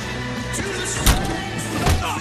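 Two hard hit sound effects of a film fistfight over a steady music score: the louder one about a second in, the second near the end.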